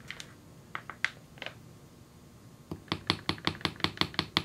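Texturing hammer tapping a sterling silver wire hook clasp on a metal bench block. A few light clicks come first, then, shortly before the end, a quick even run of metallic taps at about six a second.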